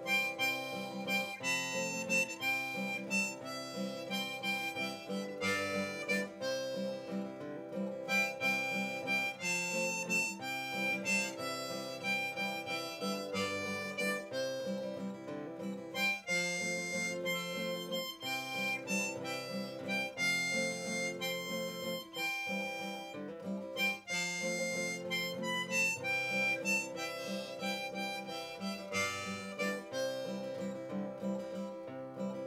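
Harmonica in a neck rack playing an old-time folk melody over steadily strummed acoustic guitar, an instrumental break between sung verses.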